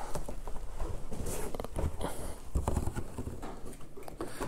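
Plastic snowmobile hood being flipped over and handled: scattered light knocks and clicks of the plastic panel, with a few dull thumps as it is set down on a padded blanket.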